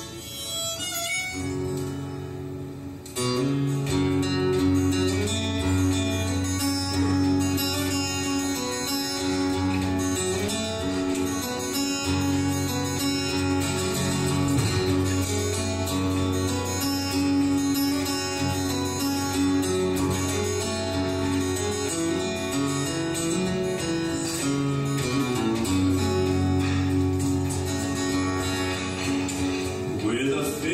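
Instrumental opening of a folk song: steadily strummed acoustic guitar with a harmonica playing long held notes over it. It comes in fully about three seconds in, after a few softer guitar notes.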